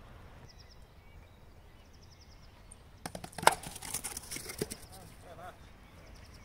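Wooden kyykkä bats and pins clattering: a run of sharp wooden clacks from about three seconds in, the loudest near the start of the run.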